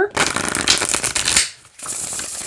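A large, oracle-sized Forbaxa tarot deck being riffle-shuffled by hand: a dense run of quick card clicks lasting over a second, then, after a brief pause, a softer patter as the cards are bridged back together.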